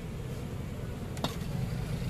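Outdoor market background with a steady low rumble and a single sharp click a little past a second in.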